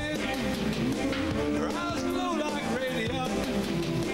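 Live rock band playing: electric guitars, bass and drums, with a lead melody that slides between notes.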